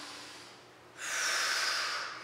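A woman's breath through nose or mouth: a short, noisy rush about a second long that starts suddenly about a second in, taken while she holds an inverted yoga pose.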